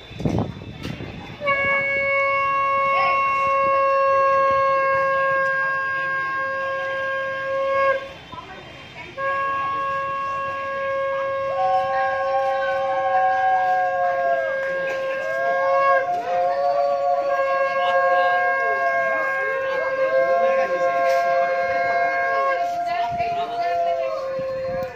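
Conch shells (shankha) blown in long held blasts for the wedding ritual: one conch sounds steadily, breaks off briefly, then resumes, and a second higher-pitched conch joins in about a third of the way through, the two notes overlapping and sagging in pitch as each blast runs out of breath. A brief low thump comes right at the start.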